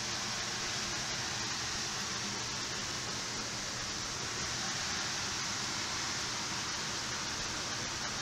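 Steady, even hiss of air moving through a greenhouse, the kind a circulating fan makes, unchanging throughout.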